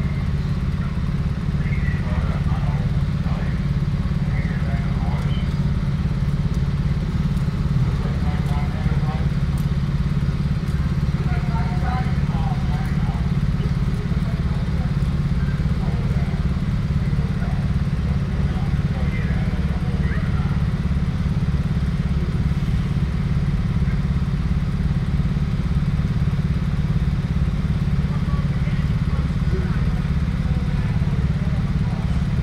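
Heavy diesel engine running steadily at low revs, a deep constant drone, with faint voices in the background.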